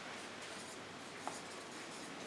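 Marker pen writing on flip-chart paper: faint scratching strokes.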